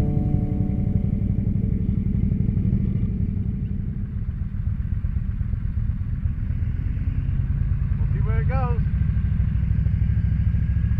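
Motorcycle engine running at low revs, a steady rumble that dips briefly in the middle and then settles into idle at a stop. About eight seconds in, a short wavering high sound rises and falls twice.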